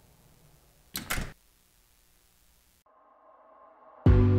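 A door shutting: two quick knocks a fraction of a second apart, about a second in. Faint music fades in near the end.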